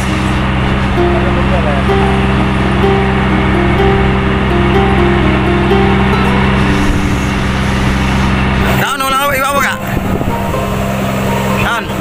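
Steady low hum of a motor aboard a fishing boat, with a stepping melody playing over it for the first several seconds. About nine seconds in, a voice comes in briefly and the hum drops out for a moment before it resumes.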